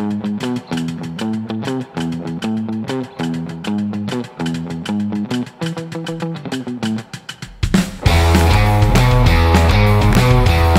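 Rock band instrumental intro: a sparse riff of short, evenly paced notes, then about eight seconds in the full band comes in much louder, with heavy bass, drums and electric guitar.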